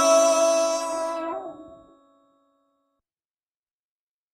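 The closing notes of an electronic trap-style song: sustained chord tones with a brief bend in pitch, dying away about two seconds in.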